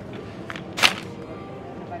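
A short, sharp crackle of a plastic pasta bag being handled, once, a little under a second in, over a low steady supermarket background.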